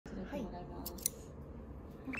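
Hairdressing scissors snipping a small child's hair: two quick, sharp snips close together about a second in.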